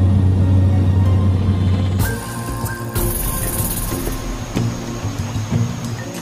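Steady low drone of a light aircraft's engine, heard inside the cabin. About two seconds in it cuts off and background music takes over.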